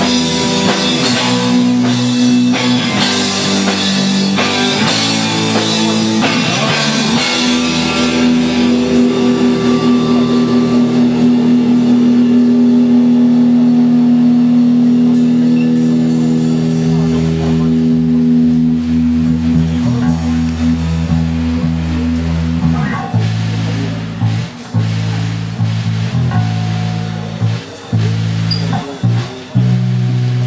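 Live rock band with electric guitars, bass guitar and drum kit playing loudly: full band with drums at first, then a long held chord left ringing for several seconds. Near the end the music thins to sparser guitar and bass notes with short breaks between them.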